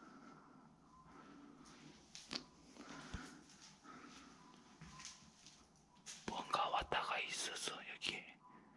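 A man whispering near the end, after a quiet stretch with a few soft clicks.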